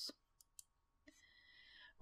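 Near silence: room tone with two faint clicks about half a second in and a faint hiss in the last second.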